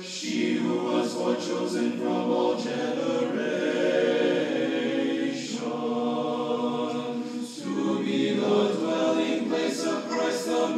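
An a cappella seminary choir singing an Orthodox Vespers hymn in sustained chordal chant, with brief breaks between phrases about five and a half and seven and a half seconds in.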